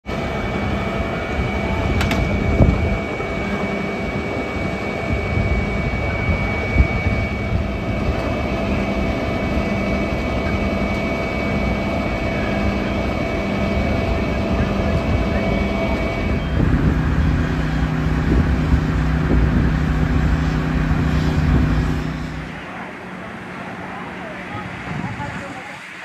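Fire apparatus engine running steadily at the fire ground, a loud drone with a high whine over it. About two-thirds of the way through the tone of the drone changes, and near the end it drops off sharply.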